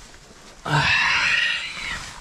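A climber's loud, drawn-out groan, starting just over half a second in and lasting about a second, close to the microphone.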